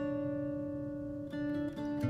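Quiet instrumental passage of a soft folk song: acoustic guitar notes plucked and left to ring, with a couple of fresh notes picked a little past the middle.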